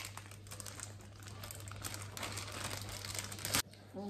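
Plastic parcel packaging crinkling and rustling as it is cut open with scissors and handled, with many small crackles and a sharp click about three and a half seconds in.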